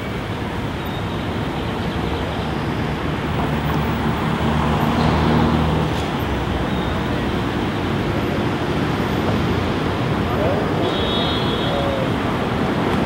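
Road traffic on a city street: car and pickup-truck engines and tyres passing in a steady rumble, swelling a little louder about five seconds in.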